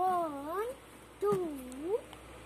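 Two long, wavering voice-like calls about a second apart, each dipping and then rising in pitch.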